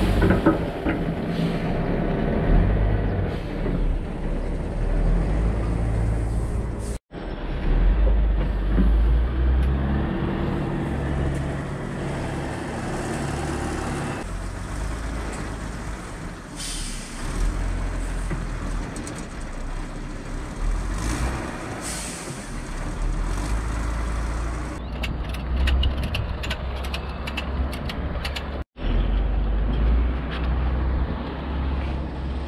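Front-loader tractor engine running and revving under load while its bucket tips oats into a grain trailer, the grain pouring in at the start. A run of quick ticks comes near the end.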